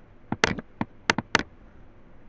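A quick run of about seven mouse-button clicks within a second, some in close pairs like double-clicks.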